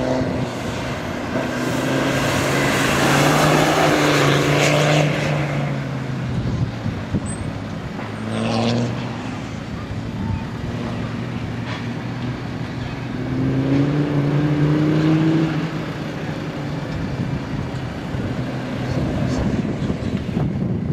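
Land Rover Defender 90's Td5 five-cylinder turbodiesel engine driving round a dirt track, its note rising and falling with the throttle. It grows louder and higher twice, a few seconds in and again about two-thirds of the way through, as the car accelerates.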